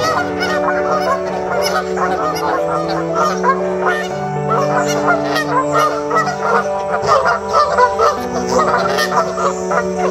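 A flock of Canada geese honking, many calls overlapping without pause, over background music with long held low notes.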